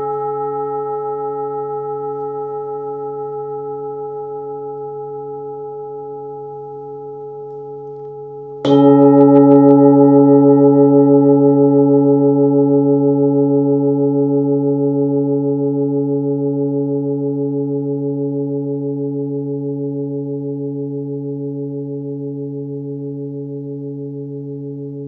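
Hand-forged 26.7 cm singing bowl tuned to 137 Hz (C#), struck and left to ring. A low hum sits under several higher overtones. The ring from an earlier strike is fading when the bowl is struck again about nine seconds in, louder, and that ring dies away slowly with a gentle pulsing wobble.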